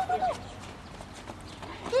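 A woman's high-pitched calls to a dog at the very start and again just before the end, with a quieter stretch of outdoor background in between.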